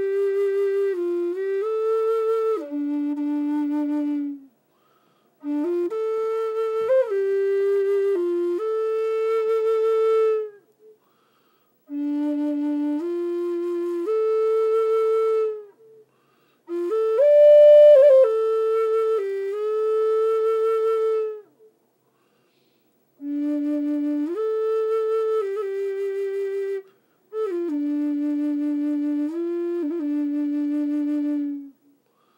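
Native American flute played solo: about six slow phrases of a few held notes each, moving up and down in small steps with a slight waver on the longer notes, each phrase a few seconds long and separated by short silences.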